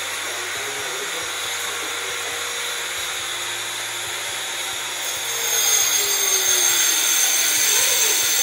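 A steady rushing noise, like a small motor or fan running, that grows louder about five seconds in.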